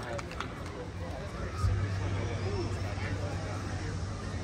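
Faint voices under a steady low hum from the stage amplification, between songs. About a second and a half in there is a thump, after which the hum grows louder.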